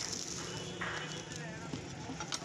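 Indistinct voices in the background, with a few light knocks and rustles as a hand-held tool is handled.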